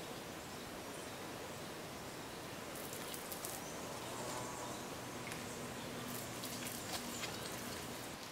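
Steady outdoor background hiss with faint rustling and a few light ticks about three seconds in, and a faint low hum in the second half; no distinct nearby sound source stands out.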